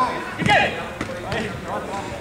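Players shouting during a small-sided football game on artificial turf, with sharp thuds of the ball being kicked; the loudest shout comes about half a second in.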